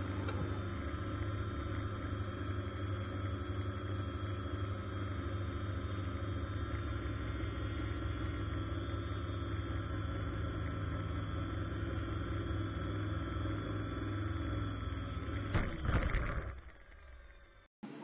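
Steady whirring hum of a multirotor drone's motors and propellers, picked up by the drone's own camera while it hovers. About 16 s in it swells briefly, then fades out.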